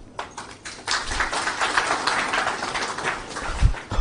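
Applause from a seated crowd of many people clapping their hands. It starts about a second in and dies away just before the end.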